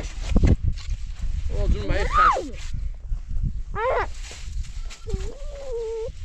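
Bleating of livestock: a call that rises and falls about two seconds in, a short rising call near four seconds, and a longer wavering call near the end, over a low rumble.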